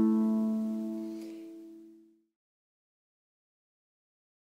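Two plucked strings of a double-strung harp, a fifth apart, ringing on together and dying away over about two seconds.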